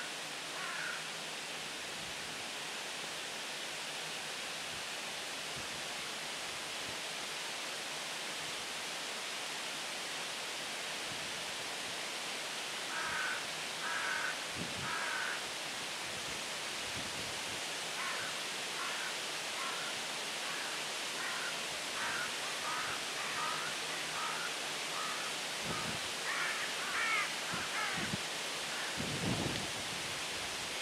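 Steady outdoor hiss, with short bird calls starting about halfway through, repeated in a run of chirps through most of the second half. A few low thumps come near the end.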